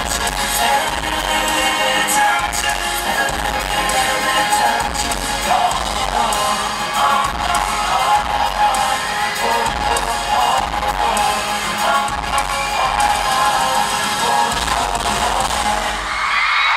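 Live pop music from a band on stage, with drums and a strong bass line, recorded from the audience. It plays loud and steady throughout.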